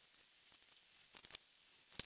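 Mostly quiet, with a few brief, faint scrapes of paper about a second in: an X-Acto knife finishing a cut through heavy cardstock and the cut piece being lifted off the cutting mat.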